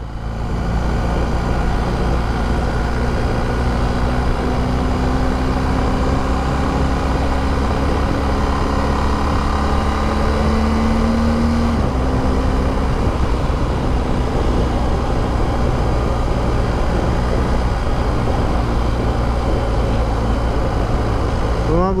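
BMW R1250 GS Adventure's boxer-twin engine pulling on the road, heard under heavy wind rumble on the microphone. The engine note climbs slowly as the bike gains speed, drops suddenly about twelve seconds in as the throttle is eased, then runs steady.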